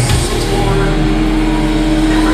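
Loud, distorted electric guitar and bass held on one droning note through the amplifiers, with no drum hits, as a heavy metal song rings out.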